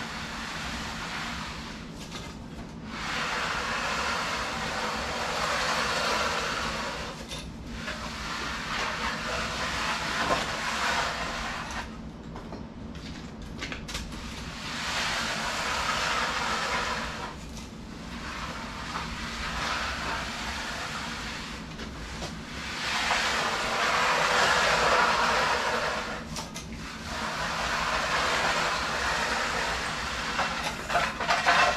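Long-handled bull float sliding over freshly poured wet concrete, a scraping swish that swells and fades with each push and pull, about six strokes in half a minute.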